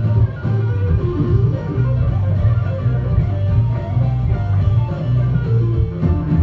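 Live band playing without vocals: electric guitars over a strong, moving bass line and drums.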